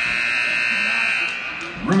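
Gymnasium scoreboard horn sounding one long, steady, loud blast during a stoppage in play, fading out near the end.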